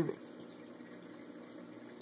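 Small aquarium filter running: a faint, steady trickle of water.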